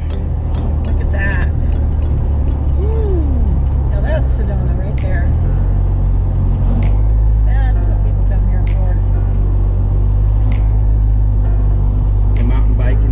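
A Jeep driving on the open road: a steady engine and road drone whose note steps to a new pitch about five seconds in, with scattered short clicks and rattles.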